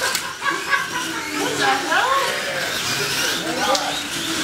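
Indistinct talk from several men in a room, overlapping chatter with a few sharp clicks.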